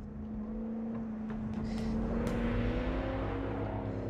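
Film soundtrack: a sustained low tone that slowly rises in pitch over a swelling rumble, growing louder.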